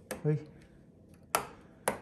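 Three sharp clicks of a wall light switch being flipped, one at the start and two close together in the second half, with a brief murmur of a voice just after the first.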